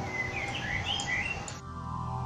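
Birds chirping, a quick run of short high chirps, over soft instrumental music that cuts off sharply about one and a half seconds in, when different music begins.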